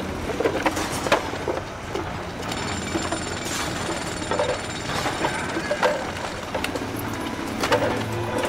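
Construction-site rubble clearing: shovels and tools knocking against broken brick and timber in irregular sharp strikes, over a steady din of site noise.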